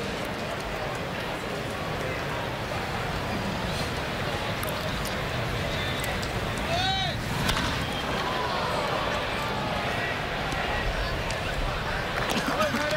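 Ballpark crowd murmuring steadily. About seven seconds in comes a sharp crack of a bat fouling off a full-count pitch, and the crowd briefly rises.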